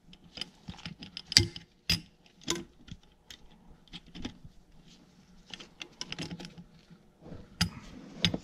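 Irregular small metallic clicks and taps as a steel pin is pushed and worked against a spring-loaded lever on a cast-iron tractor hydraulic pump body, the pin not going through easily. The sharpest knocks come about a second and a half in, just before two seconds, and near the end.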